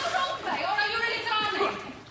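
Voices speaking, ending on the word "really".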